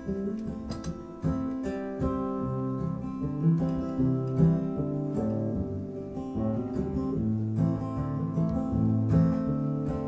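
Acoustic guitar played solo in an instrumental passage, plucked notes and chords ringing on, louder from about a second in.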